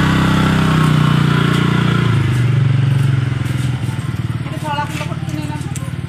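Motor scooter engine revving as it pulls away, then dropping back about two seconds in to a lower, steady running note that grows quieter as it moves off.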